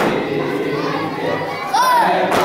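Men and boys chanting a Muharram lament (nauha) together in a crowded room, with one sharp slap right at the start, typical of a hand striking the chest in matam. One voice rises sharply then falls near the end.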